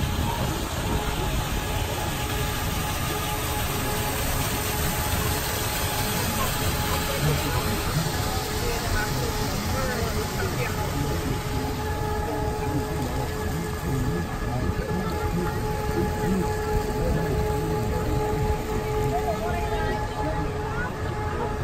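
Steady running noise aboard an elevated monorail train: a constant low rumble with a steady whine, mixed with indistinct voices and music.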